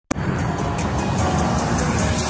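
Intro music for a logo animation, starting suddenly, with a dense rushing, rumbling sound effect over it.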